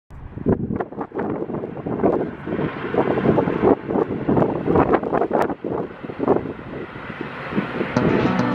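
Wind buffeting the microphone in uneven gusts, over the sound of a double-deck commuter train passing.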